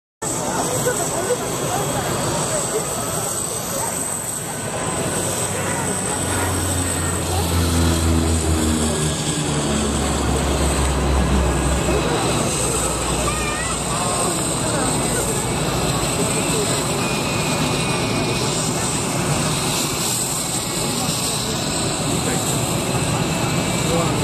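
Twin-engine turboprop airplane flying a display pass, its engines and propellers droning steadily, with a low hum that steps down in pitch between about seven and twelve seconds in.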